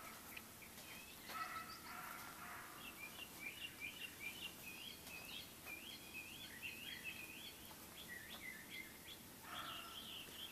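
Birds calling: a lower call with a few stacked pitches about a second and a half in, then a quick run of short high chirps for most of the rest.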